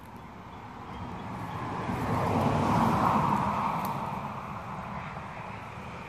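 A vehicle passing by: its noise swells to a peak about halfway through and then fades away.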